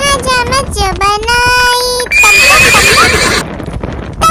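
A horse whinny sound effect, a shrill wavering call lasting just over a second, comes about two seconds in, after a few sung lines of a Hindi children's song ending in a held note.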